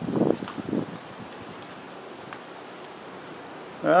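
Light wind blowing, a steady even hiss, with a few soft, muffled sounds in the first second.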